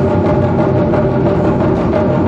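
Taiko drum ensemble playing a fast, dense stream of strokes on many drums at once, with a steady held tone sounding above the drumming.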